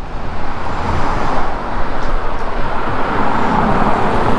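An SUV, a Ford Explorer, driving up a concrete road toward the microphone. Its tyre and engine noise grows louder as it draws close near the end.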